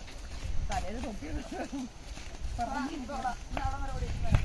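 Soft, indistinct voices of people talking while they walk, with footsteps on a dirt path and a steady low rumble underneath.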